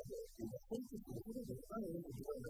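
A man's voice talking at a moderate level, with nothing else heard but the voice.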